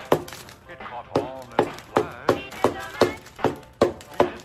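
A small wooden mallet knocking repeatedly on the hard chocolate shell of a giant smash cupcake, about two to three sharp knocks a second. The shell holds and does not break. A man's voice sounds between the knocks.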